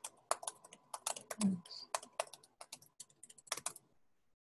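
Typing on a computer keyboard: a quick, uneven run of key clicks with brief pauses as a line of text is typed.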